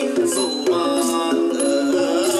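Thai piphat ensemble playing a held, bending melody line over regular percussion strikes. It is the kind of accompaniment played for a fight scene in lakhon sepha.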